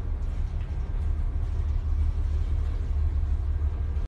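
Deep, steady rumble of wind and heavy seas aboard a tanker ploughing through a storm, wavering in strength throughout.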